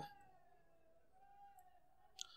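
Near silence: room tone with a faint, steady, thin tone.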